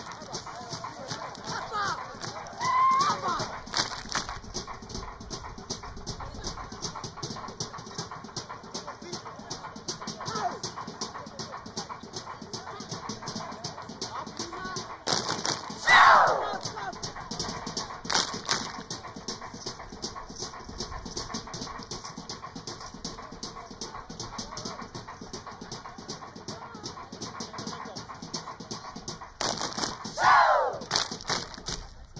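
Seated group of performers clapping and slapping in a fast, dense rhythm, with voices under it. High falling shouts or whoops cut through a few seconds in, loudest about halfway through, and again at the end.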